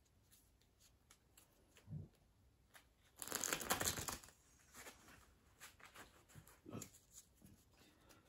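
Deck of game cards being shuffled by hand on a cloth-covered table: a soft knock, then about three seconds in a fast run of card flicks lasting about a second, followed by scattered soft clicks as the deck is handled and squared.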